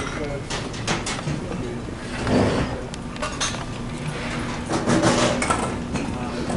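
Busy dining room: a background hubbub of diners' chatter with scattered clinks of plates and cutlery.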